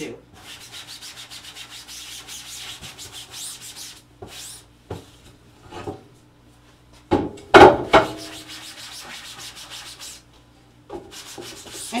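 Damp sponge rubbing a silkscreen's mesh in quick strokes, washing the drawing fluid out while the screen filler stays behind. A louder clunk comes about seven seconds in, and rubbing resumes near the end.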